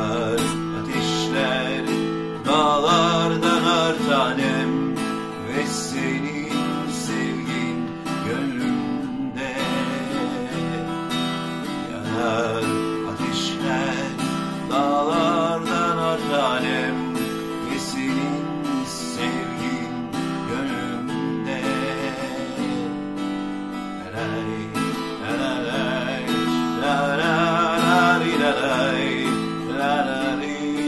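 Acoustic guitar strummed, with a wavering melody line over it, in a Turkish pop ballad.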